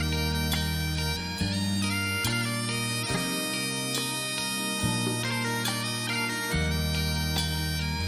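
Highland bagpipe playing a slow, sustained melody over its steady drones, with low held bass notes underneath that change every second or two.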